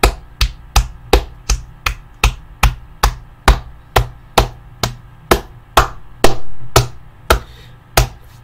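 One person clapping hands in a steady rhythm, about two and a half claps a second, spacing out slightly near the end.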